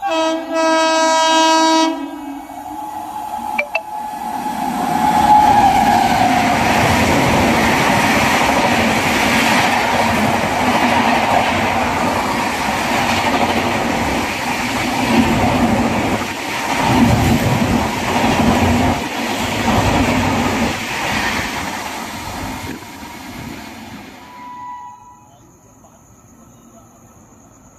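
An Indian express train's horn blasts for about two seconds, then a train of LHB coaches runs through the station at full speed. A rising rush of wheels on rails and air builds, holds with rhythmic clatter of wheels over the track, and dies away near the end.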